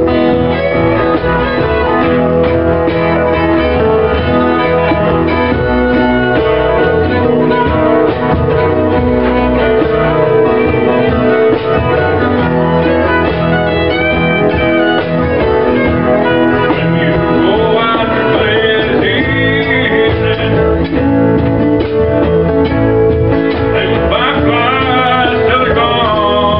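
Small acoustic country band playing live: two acoustic guitars strumming and picking, with a fiddle and a man singing. The music is steady throughout, with sliding, wavering melody lines standing out in the last few seconds.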